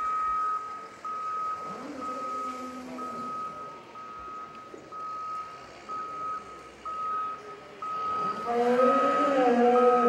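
A vehicle's reversing alarm beeping: a single high tone repeating about once a second. Near the end a louder drawn-out call rises over the beeps.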